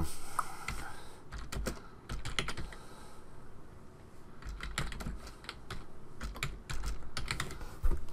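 Typing on a computer keyboard: keystrokes in short, irregular runs as a word is typed out.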